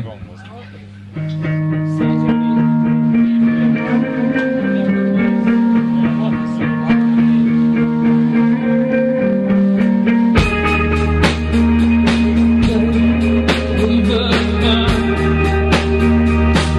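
Live indie rock band starting a song: an electric guitar picks a slow, ringing line of sustained notes. About ten seconds in, bass and drums come in and the full band plays on, louder.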